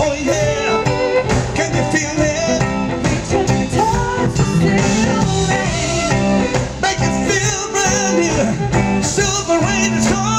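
Live smooth-jazz band playing, led by a hollow-body electric guitar, with a man's voice vocalising at the microphone without clear words over a steady low bass line.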